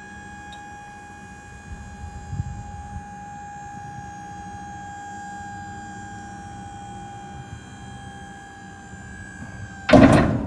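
Dump trailer's electric hydraulic pump running under load as it raises the bed, a steady whine over a low hum that sags slightly in pitch. The whine stops near the end and a sudden loud clunk follows.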